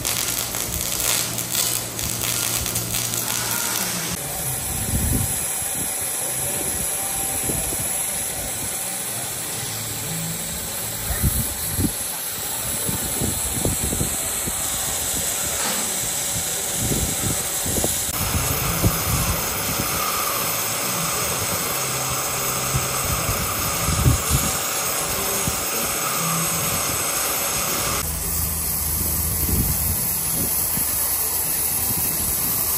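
Oxy-fuel cutting torch on a track-mounted plate cutter, a steady hiss of the cutting flame as it cuts through steel plate, heard in several short shots. It opens with a few seconds of arc welding.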